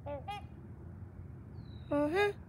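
Swans calling: two short honks right at the start, then a louder honk that rises in pitch near the end.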